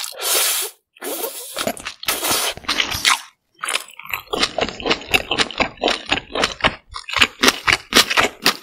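Cold noodles in broth slurped close to the microphone in three long sucking draws over the first three seconds. After a brief pause, close-miked chewing of the mouthful follows, with many short, crisp crunches.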